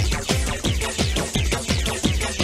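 Hardtek / free tekno DJ mix: a fast, driving kick drum at about three beats a second, each beat paired with a high synth sound that sweeps downward.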